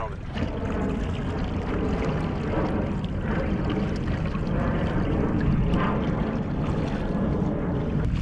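Choppy water splashing and lapping against a moving kayak's hull, mixed with wind on the microphone, as a steady rushing noise.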